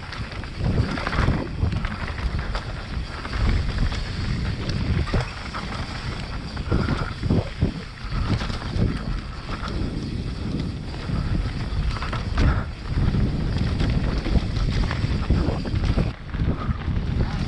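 Mountain bike riding a dirt singletrack: wind rushing over the camera microphone and tyres rolling over dirt and leaves, broken by many short knocks and rattles as the bike goes over bumps.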